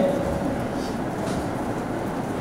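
Steady background noise with no distinct event: room noise picked up through the open microphones in a pause between sentences.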